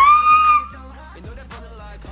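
A woman's excited high-pitched squeal that rises in pitch and holds for about half a second at the start, far louder than the K-pop track with a steady beat playing quietly underneath.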